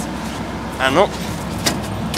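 Slavutich KZS-9-1 combine harvester's engine running steadily at idle, with a few light clicks near the end.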